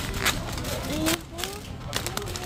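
Plastic snack bag crinkling in the hand, with a couple of sharp rustles, over background voices and store noise.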